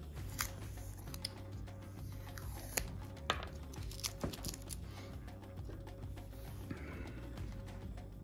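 Quiet background music, with scattered small clicks and crinkles of tape being peeled off a small plastic spiderling container.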